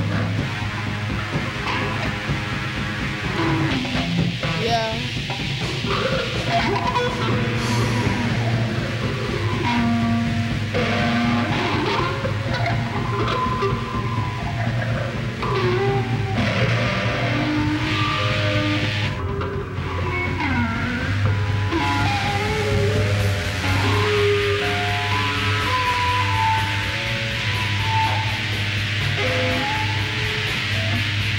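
Live rock band playing an instrumental passage without vocals: electric guitars sounding held and bending notes over a steady low drone.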